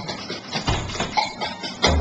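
A few scattered drum and percussion strokes in a pause between songs, with a deeper, louder drum stroke near the end.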